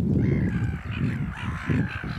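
Gulls on a tidal mudflat calling harshly, over a low rumble of wind on the microphone.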